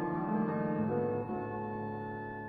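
Oboe holding one long, steady high note while a piano sounds soft low chords and arpeggios beneath it, the piano notes shifting about halfway through.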